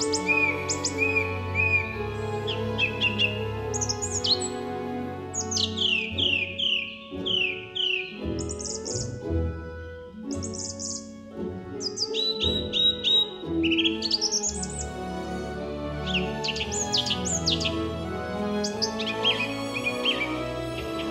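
Birdsong over soft, sustained background music: many quick chirps and short descending whistles, some in rapid runs, with a brief quieter lull near the middle.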